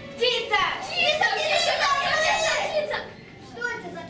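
Several children's voices shouting and talking over one another at once, dying down after about three seconds.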